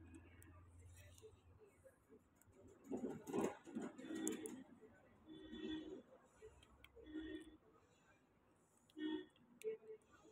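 Plastic protective film and its backing sheet handled and peeled by hand, crinkling with sharp little clicks, loudest about three seconds in. Faint voices come and go in the background.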